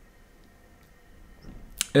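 Quiet room tone in a pause between a man's sentences, then a faint in-breath and a single sharp mouth click near the end as he opens his mouth to speak again.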